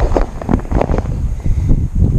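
Wind buffeting the microphone: a loud, low, uneven noise that rises and falls in gusts.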